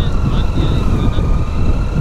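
Triumph Tiger 800's three-cylinder engine running steadily while the bike rolls slowly on a dirt road, under a heavy low rumble of wind on the helmet-mounted microphone.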